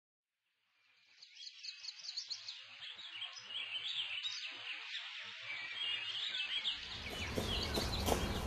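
Birds chirping, fading in after about a second of silence. Near the end a fuller sound swells in as music begins.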